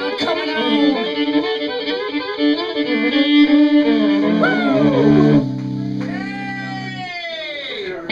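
Unaccompanied fiddle solo in a bluegrass style: quick bowed runs with many slides between notes, then a held low chord about five and a half seconds in, then a long downward slide near the end.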